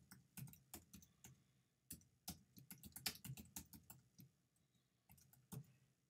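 Faint typing on a computer keyboard: irregular keystrokes, several a second, growing sparser near the end.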